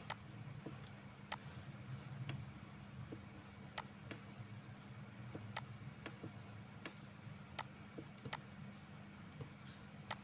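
Computer mouse clicking, a dozen or so short sharp clicks at irregular intervals, over a faint low steady hum.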